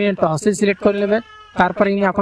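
A man's voice narrating in short, quick phrases, with a brief pause a little over a second in.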